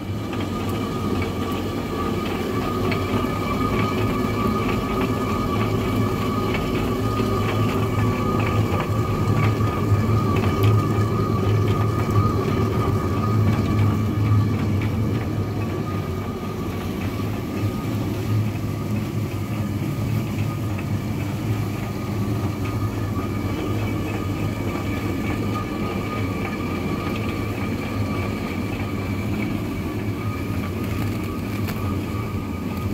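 Traditional water-powered stone mill grinding grain: the upper millstone turning on the bed stone with a steady low rumble and a constant fine clatter, a little louder in the first half.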